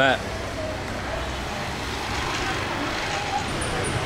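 Steady street traffic noise from motorbikes and cars passing on a city street. A faint, quick high ticking starts near the end.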